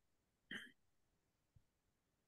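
Near silence, broken by one brief faint sound about half a second in, like a short vocal noise on a meeting microphone.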